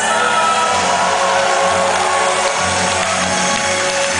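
A symphonic metal band playing loud through a concert PA, recorded from within the audience.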